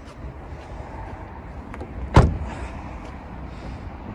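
A car door on a Toyota Yaris Hybrid shut with a single solid thump about two seconds in, over a low steady rumble.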